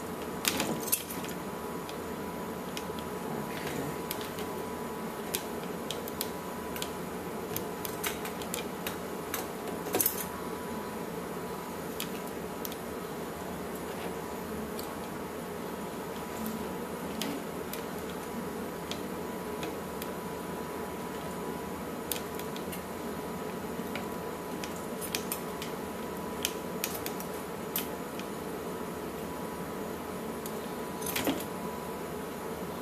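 Scissors snipping through synthetic fur, short sharp metal clicks coming in scattered clusters over a steady background hum.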